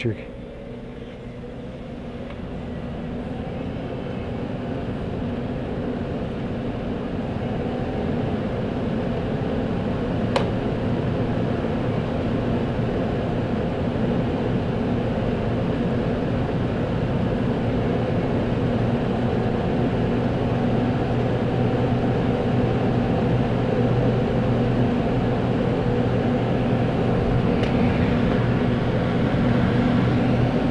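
Blower door fan depressurising a house for an air-leakage test: a steady hum and rush of air that grows louder over the first several seconds, then holds. A single short click about ten seconds in.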